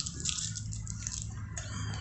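Faint wet clicks and smacks of a mouth sucking a Super Lemon sour hard candy, a few near the start and again near the end.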